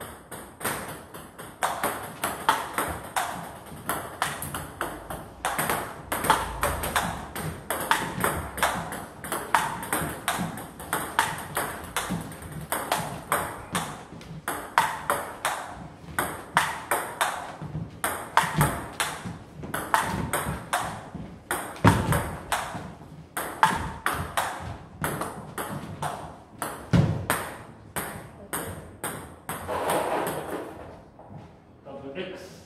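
A long table tennis rally: the plastic ball clicking off rubber-faced bats and bouncing on the table in quick, regular ticks, several a second, as a defensive chopper returns an attacker's shots with a Yasaka Rakza XX rubber. A few heavier thuds come in the second half.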